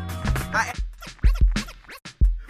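Hip hop beat with turntable scratching: quick back-and-forth pitch sweeps of a record cut over kick drums, the bass line dropping out about a third of the way in.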